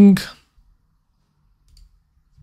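A man's voice finishes a phrase in the first half-second, then quiet room tone with a faint computer mouse click near the end.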